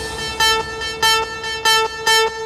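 Electronic hard dance music in a breakdown without the kick drum: a horn-like synth note repeating in short stabs about twice a second.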